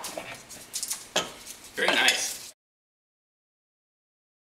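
A chef's knife cutting through a block of hard cheese on a cutting board, with a few sharp knocks of the blade on the board; the sound cuts off suddenly about two and a half seconds in.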